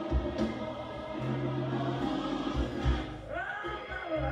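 Gospel music: a choir singing sustained notes over a bass line, with a voice sliding upward near the end.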